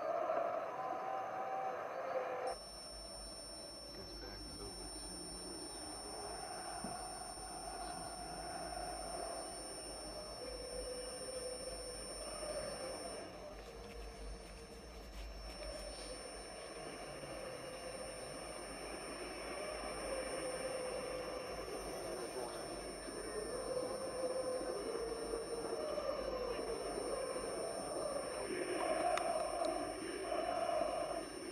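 Muffled television football broadcast, crowd and commentary dulled. About two and a half seconds in, a steady high-pitched ringing tone and a low hum cut in and hold over it.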